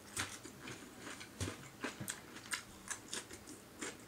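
Faint chewing of a mouthful of leafy green salad: a dozen or so small, irregular crunches spread through the few seconds.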